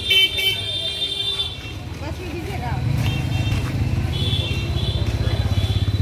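A motor vehicle engine running close by, getting louder from about halfway through, with vehicle horns sounding at the start and twice more in the second half.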